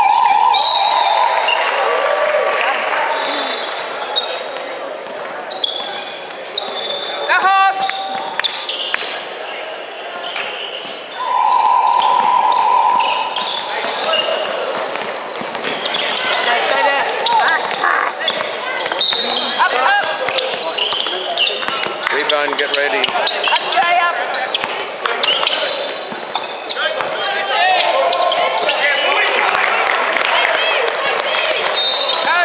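Basketball game in a large indoor hall: the ball bouncing on the hardwood court, sneakers squeaking, and players and spectators calling out. Two steady held tones, each a second or two long, sound near the start and again about eleven seconds in.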